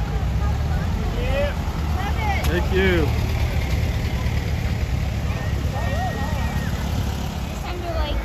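Low, steady engine rumble of a split-window Volkswagen bus and then an open dune buggy driving slowly past, with onlookers' voices and a few calls about two to three seconds in.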